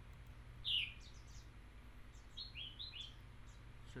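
Faint bird chirps in the background: short falling chirps, the loudest about three-quarters of a second in and a quick run of three or four around two and a half seconds in. They sit over a low steady hum.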